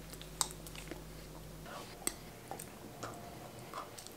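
Faint mouth sounds of a person eating thick skyr yogurt from a metal spoon: a few soft, scattered clicks and smacks.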